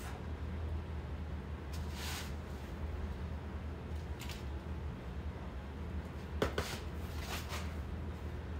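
Shredded cheese sprinkled by hand from a paper plate onto casseroles in foil-lined pans: a few soft, brief rustles with a small click, over a steady low hum.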